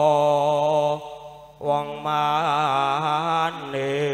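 A male singer in Javanese campursari style sings long, wavering held notes into a microphone over a steady sustained accompaniment. He pauses briefly about a second in, then starts the next phrase.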